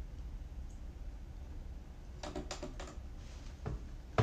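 Plastic keys of a MIDI keyboard controller clacking as they are played: a quick run of four or five clicks about halfway through and one more near the end, over a low steady hum. The synth's own sound goes only to headphones, so just the key action is heard.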